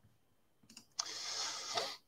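A single sharp click about a second in, followed by a brief hiss lasting just under a second that stops abruptly.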